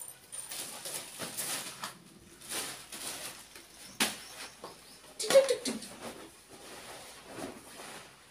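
Plastic bag crinkling and a large cloth blanket being pulled out and unfolded, with scattered rustles and flaps. A sharp click comes about four seconds in, and a short loud sound just after five seconds.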